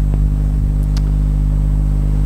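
A steady low hum, with two faint clicks about a second in.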